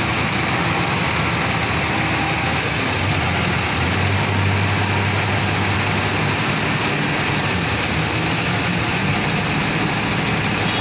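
Engine of an 8-ton Voltas diesel forklift running steadily, with a low hum that swells briefly about four seconds in.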